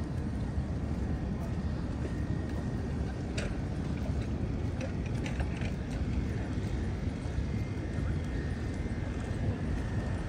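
Outdoor street ambience heard while walking: a steady low rumble with a few scattered light clicks and knocks, and a faint thin tone in the last few seconds.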